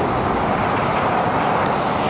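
Road traffic going by on a street: a steady rush of tyre and engine noise from passing vehicles.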